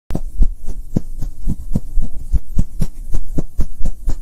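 Intro sound effect for an animated logo: a fast, even run of deep low pulses, about four a second, over a low hum.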